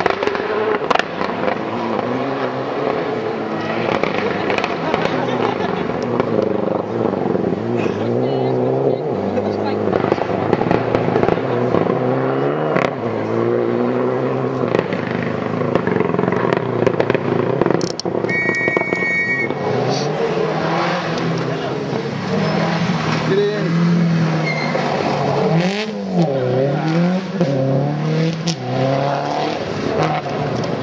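Rally cars on a gravel forest stage, the engines revving up and down through gear changes as they approach and pass, with occasional sharp cracks. A brief high steady tone sounds just past the middle.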